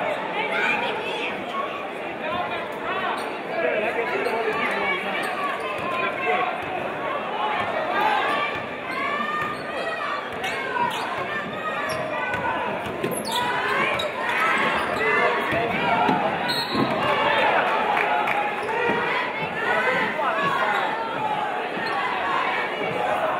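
Basketball dribbling on a hardwood gym floor during play, under echoing voices of the crowd and players. There is one sharp hit a little past halfway.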